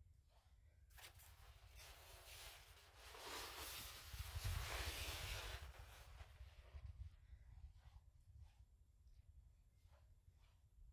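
Curtain fabric rustling as it is drawn open, a soft hiss that starts about a second in, grows louder in the middle and dies away again.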